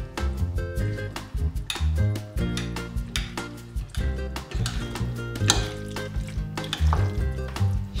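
Metal utensils clink against a ceramic serving bowl as trofie are tossed through pesto and cream, with many short, irregular clicks and stirring sounds. Background music with a held, stepping bass line plays underneath.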